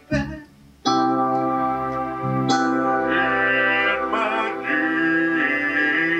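Kurzweil keyboard playing a layered piano-and-strings sound. After a brief pause, a chord starts suddenly about a second in and is held, and a further chord enters about halfway through.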